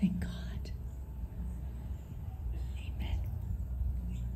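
Faint whispered voices over a steady low rumble, with a brief knock right at the start.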